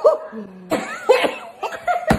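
People laughing and coughing with their mouths stuffed full of marshmallows, in several short bursts.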